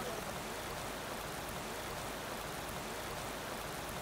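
Steady rushing of hot-spring water, an even, unbroken hiss.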